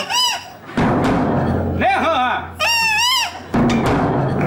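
Davul, the large double-headed Turkish bass drum, being beaten with a deep boom. The drumming starts suddenly about a second in and stops shortly before the end.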